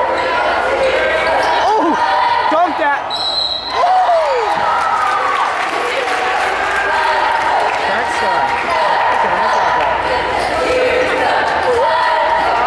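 Gym noise at a high school basketball game: spectators chattering and calling out, a basketball bouncing on the hardwood floor, and a short, high referee's whistle a little after three seconds in.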